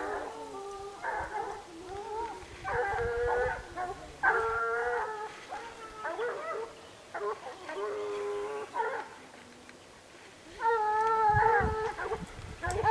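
Hunting hounds baying in long drawn-out calls, several voices overlapping, as they give tongue on a wild boar hunt. The calls ease briefly about nine seconds in, then a louder one starts near the end.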